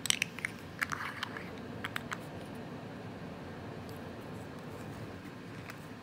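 Small glass MAC Paint Pot jar being closed and handled: a quick run of sharp clicks and taps from its screw-on lid in the first two seconds, then only steady background noise.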